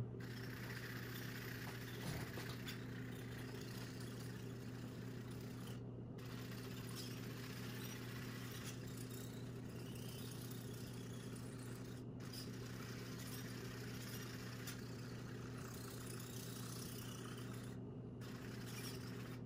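Small DC motors of a homemade robot vacuum car running steadily: the wheel drive motors and the suction fan motor give a constant low hum with a hiss above it, and a light click about two seconds in.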